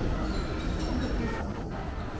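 Steady low rumble and hiss of an indoor shopping mall's background noise.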